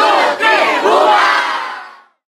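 A crowd of young women screaming and cheering excitedly all at once, many high voices overlapping, fading out near the end.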